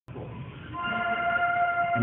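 A marching band's wind instruments holding a high sustained chord. It enters a little under a second in and swells louder.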